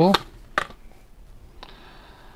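A coiled silicone USB-C cable picked up off a table and handled: two small clicks, about half a second and a second and a half in, with faint rustling between them.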